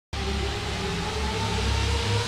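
Synthesized logo-intro sound effect: a steady noisy rush over low droning tones that starts abruptly and swells slightly.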